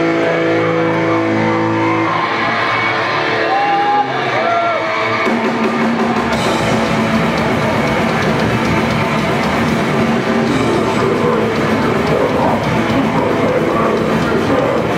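Grindcore band playing live at full volume: distorted guitars ring out on held chords for the first few seconds, with a few sliding notes. About five seconds in, the full band comes in with fast, dense drumming under the distorted guitars.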